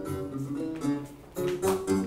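A children's song playing from a CD: a stretch of guitar accompaniment with no singing, dipping briefly just past the middle before picking up again.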